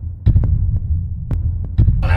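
A deep, loud rumbling sound effect with several heavy thumps at uneven intervals, matched to a bare foot stepping down.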